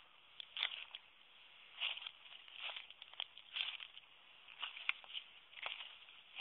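Footsteps crunching through dry leaf litter and twigs, an irregular series of soft crunches and rustles about once a second.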